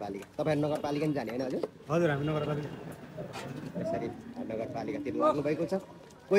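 People talking in several short stretches, probably an unrecorded conversation between men at close range.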